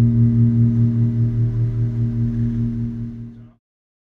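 The band's last low note held and ringing out, wavering several times a second. It fades and then cuts off about three and a half seconds in, at the end of the piece.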